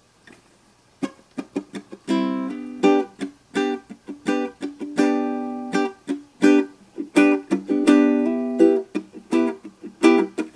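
Ukulele strummed in a steady rhythmic pattern, starting about a second in, playing a song's intro chords, including a G chord.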